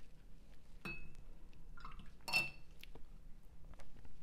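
A paintbrush clinks twice against a glass water jar, about a second and a half apart. Each clink rings briefly, and the second is louder.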